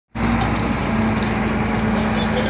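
An engine running steadily: a constant low hum under a wide, even rushing noise.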